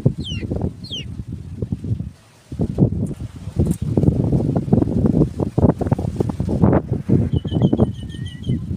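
Wind buffeting the microphone in gusts, dropping away briefly about two seconds in. Birds call over it: two quick falling chirps near the start and a run of short repeated notes near the end.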